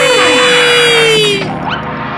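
Cartoon soundtrack: a long, loud held note that cuts off about one and a half seconds in, while a whistle-like tone slides steeply down over the first half second, with music underneath.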